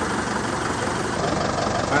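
A large vehicle's engine idling steadily: a constant low rumble with a hiss over it.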